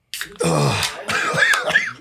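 Men coughing and clearing their throats, with short voiced exclamations near the end, in reaction to sniffing ammonia smelling salts.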